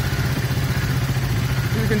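KTM 200 Duke's single-cylinder engine idling steadily.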